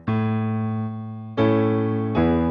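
Keyboard piano playing held block chords, a new chord struck about a second and a half in, as part of a root-position one–five–one chord progression.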